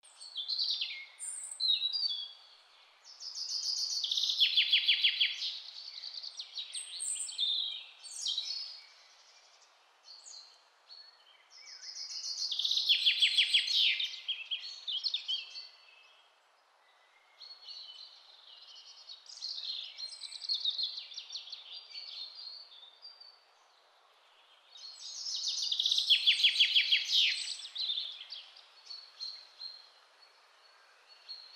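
Bird song: loud phrases, each with a rapid trill, come about every ten seconds, with quieter chirps between them, over a faint steady hiss.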